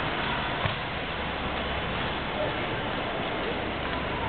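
Steady hiss of a large, echoing indoor ice rink with faint distant voices and one or two light ticks.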